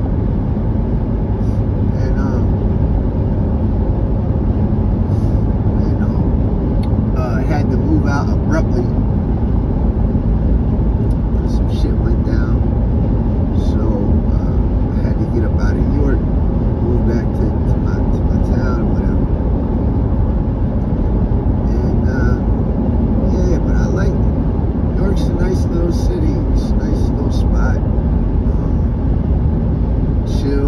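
Steady road and engine noise inside a car cabin cruising at highway speed.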